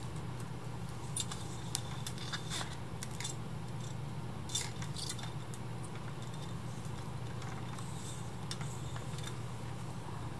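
Reel-to-reel tape recorder humming steadily while its reels are handled, with a few light clicks and knocks in the first half. The recorder is set to rewind, but a brake presses on the reel table with too much pressure, so the reels barely turn.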